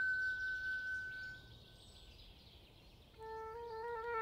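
A flute holds a long high note that fades away about a second and a half in, leaving a short quiet stretch of faint nature ambience with a brief high bird chirp; near the end the flute comes back in on a lower melody.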